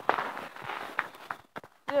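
Footsteps and rustling as a handheld phone is carried along on foot, with a few irregular thuds in the first second and a half.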